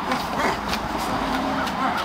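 Road traffic: cars passing on the street alongside.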